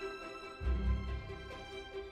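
Background music of sustained held notes, with a deep bass note coming in about half a second in.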